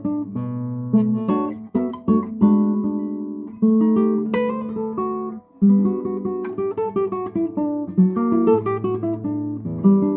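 A 1967 Hashimoto classical guitar played fingerstyle: chords and melody notes plucked and left to ring. The playing pauses briefly about five and a half seconds in, then resumes.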